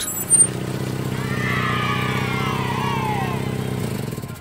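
Car engine sound effect running steadily, with a whine falling in pitch over it in the middle seconds, then fading away just after.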